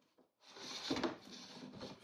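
Ingco hand plane with a folded steel sole and an unsharpened, straight-out-of-the-box blade, taking a shaving along the edge grain of a Tasmanian oak board: one noisy scrape that starts about half a second in and lasts about a second and a half, loudest about a second in.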